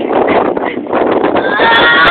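A woman's high-pitched giggling and squealing, breathy at first and then breaking into a long held squeal near the end.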